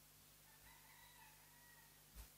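A faint, drawn-out call held for a little over a second, with a slight step in pitch partway through, over quiet room tone with a low steady hum.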